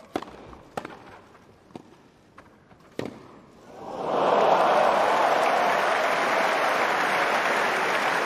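Racket strikes on a tennis ball in a grass-court rally, about five sharp hits starting with the serve. A crowd then breaks into loud cheering and applause about four seconds in, holding steady at the end of the point.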